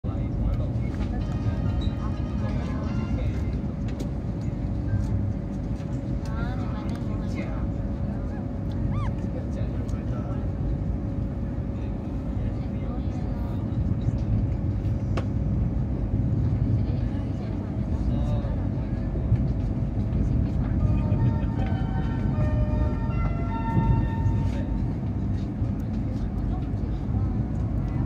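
Steady low rumble of a CRH380A high-speed train running, heard from inside its passenger cabin.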